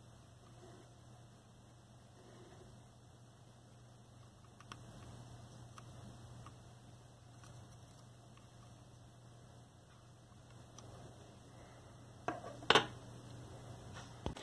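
Low steady hum with a few faint light clicks, then two sharper taps about twelve seconds in: a soldering iron tip and a fine tool touching the circuit board of a drone.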